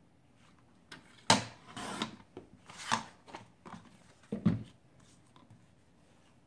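Paper being handled and cut on a plastic sliding paper trimmer: a string of short scrapes, rustles and knocks as the striped sheet is shifted under the cutting rail and the blade is run along it. The sharpest sound comes a little over a second in and a heavier knock about four and a half seconds in.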